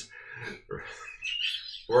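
Soft, broken vocal sounds from a small group of people, including a brief high-pitched squeal about a second and a half in, with laughter and speech starting near the end.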